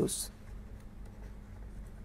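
Faint scratching and tapping of a stylus writing on a tablet surface, over a low steady hum.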